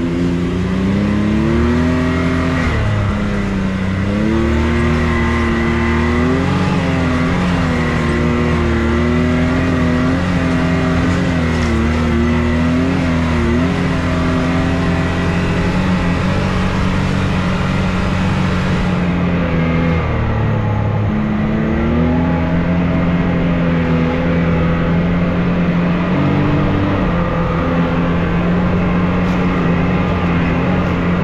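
Can-Am Maverick X3 side-by-side's turbocharged three-cylinder engine, heard from the driver's seat, pulling along a dirt trail. Its pitch rises and falls again and again as the throttle is worked in the first half, then holds steadier near the end.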